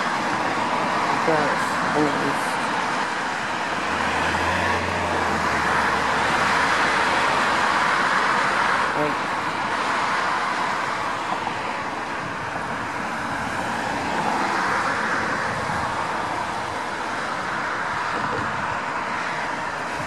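Road traffic going by: a steady wash of tyre and engine noise that swells as vehicles pass, about five to nine seconds in and again near fifteen seconds, with a low engine rumble around four to seven seconds in.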